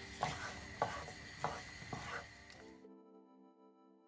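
Chopped red onion frying in a pan, stirred with a wooden spatula: a soft sizzle with about five scrapes of the spatula. A little under three seconds in, it cuts off abruptly and soft background music with sustained notes takes over.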